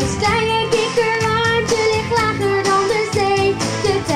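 A woman singing a song over instrumental accompaniment, with long held notes.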